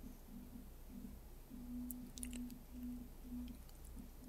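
Faint computer mouse clicks, a few close together about halfway through, over a low steady hum and a low buzzing tone that keeps cutting in and out.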